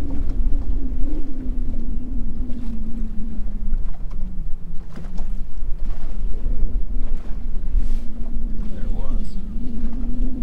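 Wind buffeting the microphone on a boat, with a steady low hum running underneath that drifts a little in pitch, and a few faint clicks.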